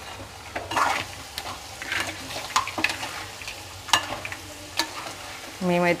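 A spatula stirring crab pieces and masala in a non-stick pan, with irregular scrapes and knocks against the pan over a soft steady sizzle of the curry frying.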